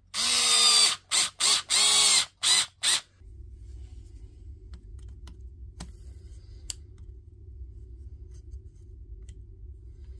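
Cordless power driver running in short bursts, about six in the first three seconds, as it drives the screws holding the battery pack's cell holder. The motor's pitch wavers within each burst. From about three seconds in, a steady low hum is left, with a couple of faint clicks.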